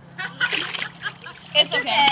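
Water splashing in a swimming pool, mostly in the first second, with children's voices rising near the end.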